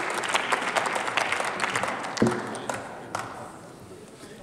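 Parliament members applauding, the clapping thinning and dying away over the last two seconds, with one sharp knock about two seconds in.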